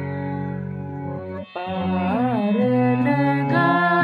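A boy singing a Hindustani classical raga over a steady drone accompaniment: one long held note, a short break about a second and a half in, then a new phrase with wavering, ornamented glides in pitch.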